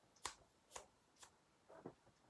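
Faint, short, sharp clicks at an even pace of about two a second, with a softer, duller sound near the end.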